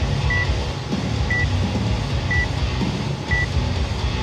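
Countdown timer beeping once a second with short, high, identical beeps, counting down the final seconds before a workout starts, over a steady low rumble.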